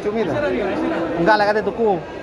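Speech only: several people talking over one another at a busy market counter.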